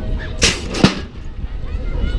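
BMX start gate dropping: a short burst of noise, then a sharp bang just under a second in as the gate falls flat.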